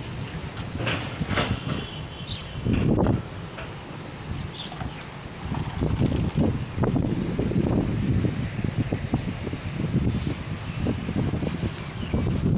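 Wind buffeting the microphone in uneven rumbling gusts over a steady rustling hiss, the gusts growing stronger about halfway through.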